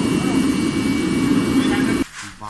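Bronze-melting furnace running with its flame blasting out of the top: a loud, steady rushing noise that cuts off suddenly at the end.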